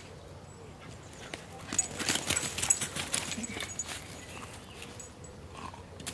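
Dry leaves and twigs crunching and crackling underfoot as a dog moves through woodland leaf litter, a dense burst of crackling for about two seconds in the middle.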